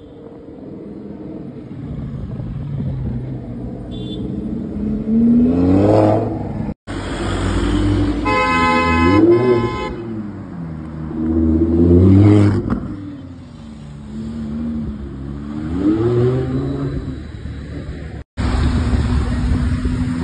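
Supercar engines revving hard in city traffic, the pitch rising and falling several times, with a car horn sounding twice in quick succession about eight seconds in. The sound drops out briefly twice.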